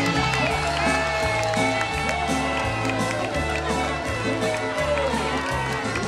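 Fiddle tune with guitar over a bass line that steps from note to note.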